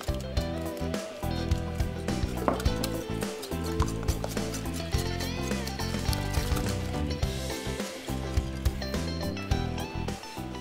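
Background music, with a wire whisk clicking and scraping against a glass mixing bowl as eggs and sugar are beaten together.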